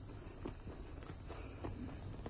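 Night insects such as crickets chirping: a rapid pulsed trill, with higher buzzing bursts from another insect, and a few faint footsteps on the path.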